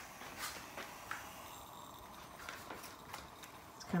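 A few faint, light clicks and taps as a hot aluminium stovetop moka pot is handled and tipped over a mug, over low room tone.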